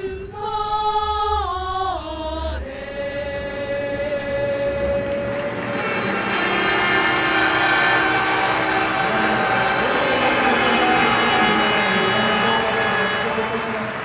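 Choral music: a choir holds sustained notes, some sliding down in pitch, then swells into a fuller, louder passage about six seconds in.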